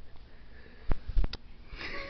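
Handheld camera being moved around: a few sharp knocks about a second in, then a short breath close to the microphone near the end.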